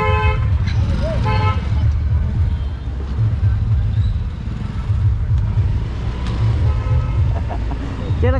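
Steady low rumble of a moving scooter with wind buffeting the microphone, and a vehicle horn tooting twice in the first couple of seconds, with a fainter toot near the end.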